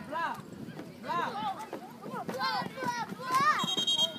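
Spectators and players shouting during a football play, then a referee's whistle blows one steady high note near the end, signalling the play dead.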